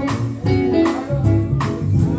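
Live gospel band playing: drum kit keeping a steady beat with bass and electric guitar underneath.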